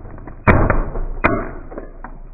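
A small plastic toy car cracking and snapping as a car tyre rolls over it. There are two sharp cracks about three-quarters of a second apart, with smaller crackling between them.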